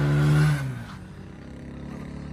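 A small 7 HP single-cylinder petrol engine revving, its pitch climbing steadily, then dropping away suddenly about half a second in, leaving only a low background noise.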